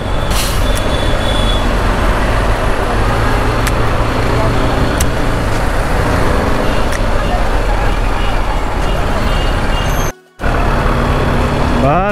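BMW G310R's single-cylinder engine running steadily under heavy road and wind noise while riding in city traffic. All sound cuts out suddenly for a moment about ten seconds in.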